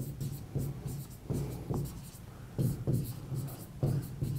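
Chalk writing on a blackboard: a run of short, separate scratching strokes as a word is written out.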